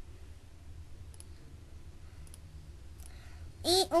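Faint computer mouse clicks, in quick pairs about a second apart, over a steady low hum.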